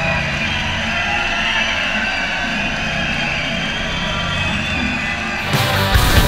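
Rock music with guitar: a loud, sustained passage that holds steady, then drums crash in hard about five and a half seconds in.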